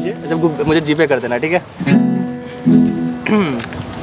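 Acoustic guitar strummed under people talking, with a steady high-pitched tone throughout.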